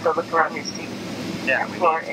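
Two short bits of talking over the steady hiss of an airliner cabin.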